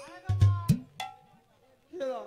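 Stage percussion accent: a deep drum stroke followed by two sharp metallic strikes, the last ringing briefly before the sound dies away.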